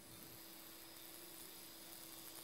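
Near silence: a faint steady hiss with a faint low hum.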